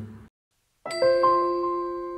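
After a moment of silence, about a second in, a bell-like chime jingle starts: several struck notes ring together and slowly fade.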